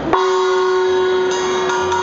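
A single sustained musical note cuts in suddenly just after the start and holds one steady pitch with a row of overtones, with higher tones joining partway through.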